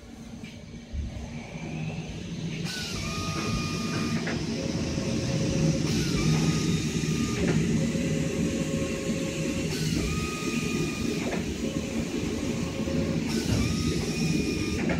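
Richpeace automatic fabric cutting machine running: a steady low mechanical rumble with hiss that builds up over the first two seconds. A stepped motor whine comes and goes about every three to four seconds as the machine moves.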